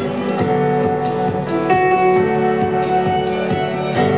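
Live instrumental passage for violin and piano: bowed violin notes held over a steady pulse of accompanying notes, with no singing.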